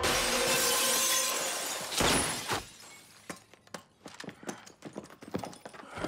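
A loud crash of breaking glass lasting about two seconds as an armed team bursts into an office, then a second sharp crash about two seconds in, followed by a quick scatter of knocks and footfalls from boots and gear.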